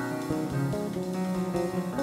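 Live instrumental music from a small band, with electric bass, drum kit and piano, in a tango-jazz fusion style; the bass notes stand out as held, plucked tones.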